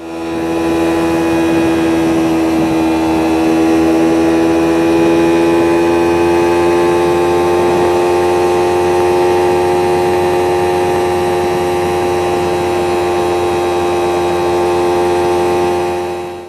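Motorcycle engine held at steady high revs on the road, one strong hum whose pitch creeps slowly upward, over a steady hiss of wind and road noise.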